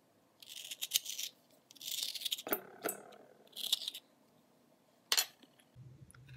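A metal spoon scraping seeds and pulp out of a halved butternut squash: three rasping scrapes in the first four seconds, with a few sharp knocks, the loudest about five seconds in.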